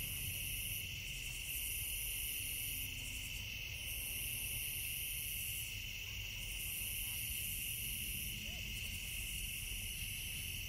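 Night-time insect chorus: a steady high trill, with a higher pulsing call over it that comes in phrases of about a second and a half to two seconds separated by short gaps.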